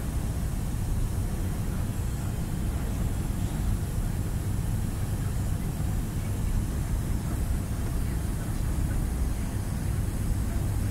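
Steady low rumble of a lorry's diesel engine and tyre/road noise heard inside the cab while cruising at speed.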